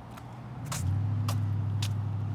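Footsteps on a brick path, about two a second. From just under a second in, a steady low engine hum from a motor vehicle comes up and holds, louder than the steps.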